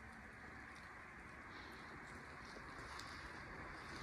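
Faint, steady background hiss, with a few brief, higher hisses over it.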